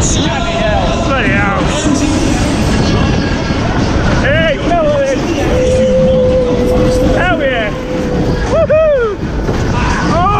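Onboard a fairground Matterhorn ride at speed: steady wind buffeting on the microphone and the ride's rumble. Riders whoop with rising-and-falling cries about four and a half, seven and nine seconds in, with one long held cry between them.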